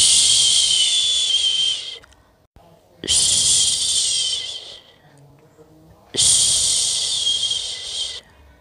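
A person shushing to lull a baby to sleep: three long "shhh" sounds of about two seconds each, with short pauses between.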